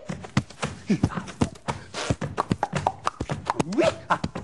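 Hambone body percussion: rapid, rhythmic slaps of hands against chest and thighs.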